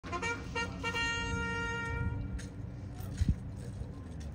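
A horn sounding three short toots and then one long toot, all on one steady pitch, followed about three seconds in by a short low thump.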